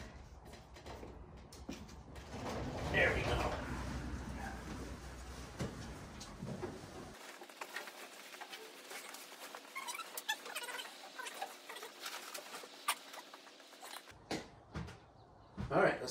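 Fabric car cover rustling and crinkling as it is pulled off a vehicle, with small scattered clicks, heard mostly in the second half; faint muffled voices earlier on.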